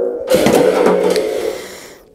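A small spring drum (thunder drum) sounding: about a third of a second in, a sudden metallic rattle with its spring ringing under it, fading away over about a second and a half.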